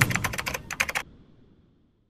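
Keyboard-typing sound effect: a quick run of about a dozen key clicks over the first second, then it stops abruptly.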